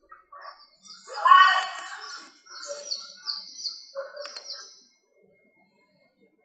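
A small bird chirping: runs of short, high, falling chirps, about three a second in the second half, with a louder pitched call at about a second in. It stops about five seconds in.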